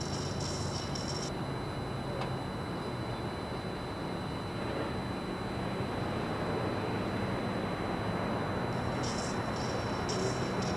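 Steady background rumble of distant city traffic, with faint high hissing bursts near the start and again near the end.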